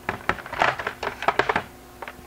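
C-size batteries being pulled out of a Nerf Rival Charger's plastic battery compartment: a quick run of clicks and knocks as the cells rattle against the plastic and each other.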